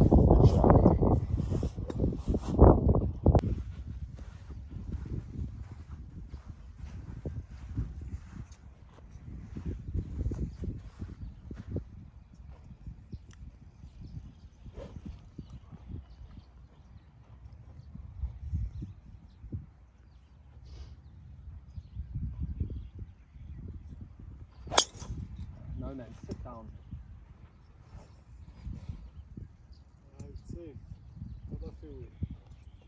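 Gusts of wind rumbling on the microphone, then, about 25 seconds in, the single sharp crack of a driver striking a golf ball off the tee.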